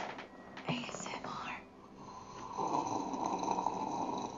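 Breathy mouth noises of a person sipping a drink from a glass: a short breathy sound, then a longer drawn sip from about halfway through.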